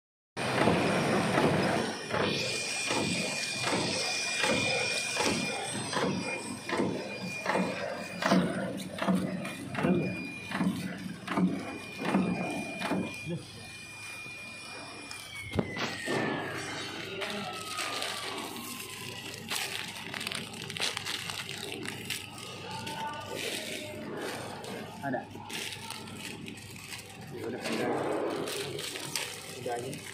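Horizontal flow-wrap packaging machine running, with rapid regular clicking of its cycle at about two to three a second and a high steady whine that falls in pitch about halfway through.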